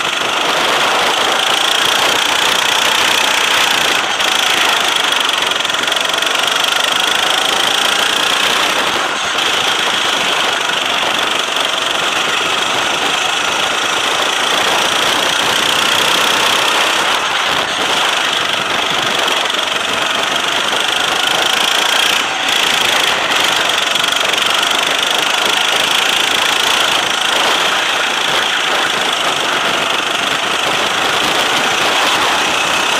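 Go-kart engine heard from the driver's seat while racing, running continuously, its pitch rising and falling with the throttle through the corners, over a steady rushing noise.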